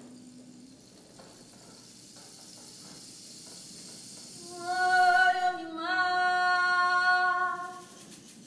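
A woman singing without words, two long held notes, the second a little lower, coming in loudly a little past halfway after a quiet start.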